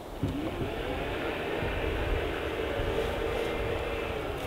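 Land Rover Discovery 5's powered tailgate closing: its electric motor starts with a whine that rises in pitch over the first second, then runs steadily as the tailgate lowers.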